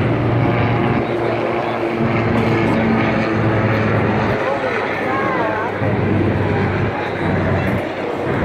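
Steady low drone of heavy engines, with people's voices over it.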